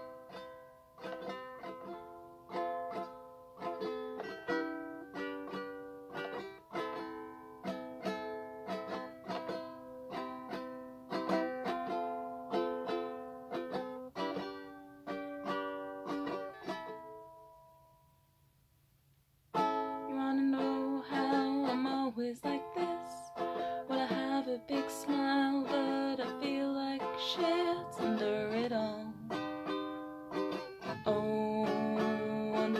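Tenor ukulele played as a song's introduction, its notes dying away into a brief pause about 17 seconds in. At about 20 seconds the ukulele starts again, with a voice singing over it.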